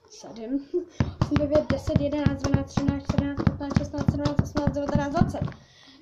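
Football bounced by hand on a carpeted floor: a quick, even run of dull thuds, several a second, that stops near the end.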